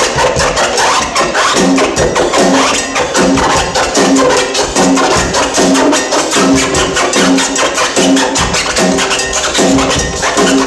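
Live band playing an instrumental with a steady, busy beat, electric guitar and a short low riff repeating about every half second or so.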